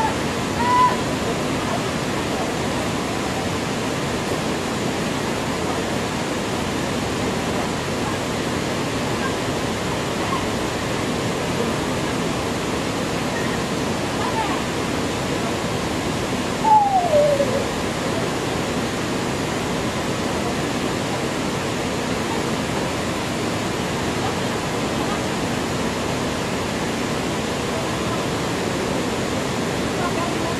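Small waterfall pouring over rocks into a pool, a steady rush of falling water. A short call sliding down in pitch cuts through about halfway, with a brief higher call near the start.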